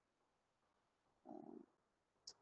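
Near silence: room tone, with one brief faint low sound about a second and a quarter in.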